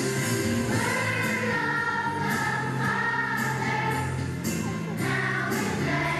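Children's choir singing together over a steady musical accompaniment, with held notes.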